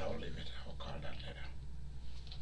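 A man whispering in short breathy fragments, over a steady low hum.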